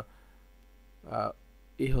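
Low, steady electrical hum, with one short voice sound about a second in and speech starting right at the end.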